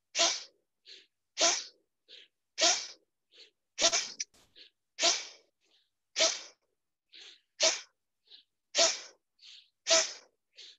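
A person doing a yogic breathing exercise: sharp, forceful exhalations, about one a second, each followed by a softer, shorter intake of breath, in an even rhythm.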